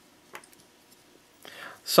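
Near quiet with a single faint click about a third of a second in, then a soft breath just before a man's voice starts at the very end.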